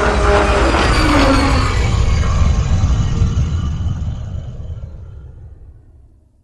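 Cinematic intro sting: a deep rumbling swell with falling tones in its first couple of seconds, then fading away steadily.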